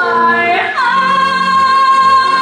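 A woman singing a solo, sliding up about two-thirds of a second in to a long, high held note, over instrumental accompaniment.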